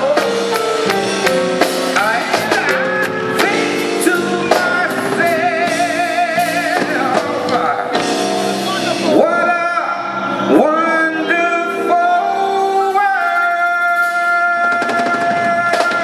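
A man singing a slow ballad into a microphone over instrumental backing, holding long notes with a wide vibrato.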